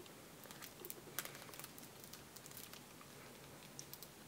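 Faint, scattered light clicks and rustles of small objects being handled, close to near silence.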